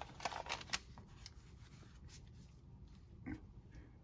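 A few faint taps and paper rustles in the first second as a comic book wrapped in silicone parchment paper is laid onto a metal plate and straightened by hand.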